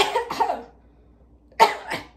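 A woman coughing twice: a cough right at the start and a second, sharper one about a second and a half in.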